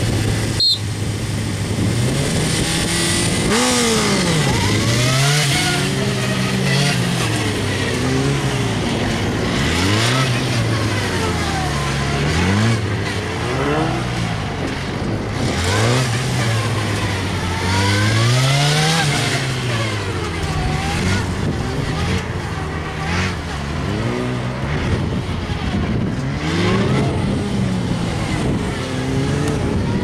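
Sport motorcycle engine revving up and dropping back over and over, about once every one to two seconds, as it is ridden hard through a tight cone course. There is a sharp click just under a second in.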